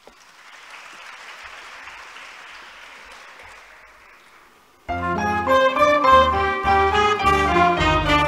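Audience applause swells and fades. About five seconds in, a youth orchestra starts playing loudly, with many instrument notes over a bass line.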